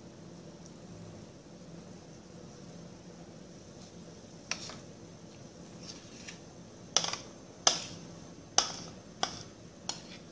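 A faint steady low hum, then, from about halfway, a series of about eight sharp clinks and knocks of a utensil against a glass Pyrex baking dish as thick cake mixture is transferred into it.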